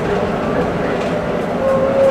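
Cabin noise of a moving city bus: steady engine and road rumble. A steady whine sets in near the end.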